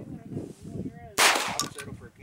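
A single handgun shot about a second in, sharp and loud, with a short ring-out after it.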